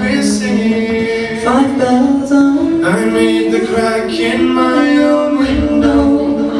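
Live folk band singing in several-part harmony, the voices holding long notes and changing chord together.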